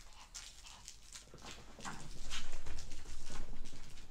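Dogs playing: a rapid run of clicks and patters from paws and claws, growing louder with heavier low thuds about halfway through.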